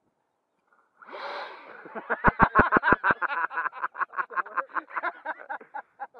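Men laughing hard: a breathy burst of laughter, then a long fast run of 'ha's, about seven a second, with a few low thumps on the microphone a couple of seconds in.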